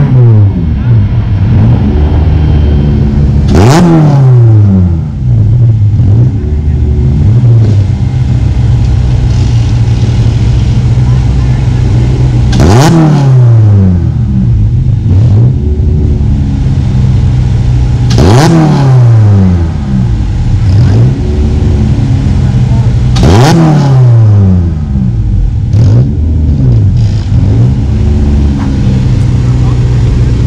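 Racing stock car engines running loud and steady, with about five cars passing close at speed, each pass a falling rush of engine pitch.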